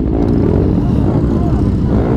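Motorcycle engines idling with a steady, dense low rumble, with voices in the background.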